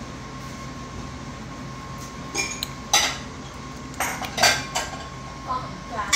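Dishes and utensils clinking and knocking on a kitchen counter: about six short, sharp clinks, some briefly ringing, scattered through the second half.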